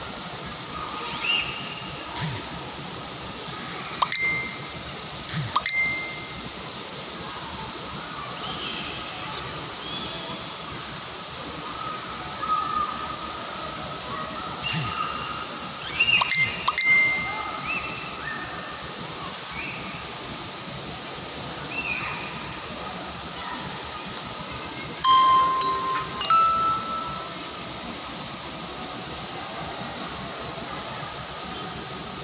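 Outdoor ambience: a steady hiss, broken every few seconds by brief, clear ringing tones like small chimes being struck, in clusters about 4, 5.5, 16 to 17 and 25 to 26 seconds in, and a few short chirps.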